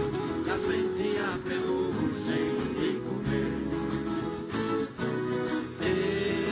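An orchestra of violas caipiras, the ten-string Brazilian folk guitar, playing together live, with chords strummed in a steady rhythm over sustained notes.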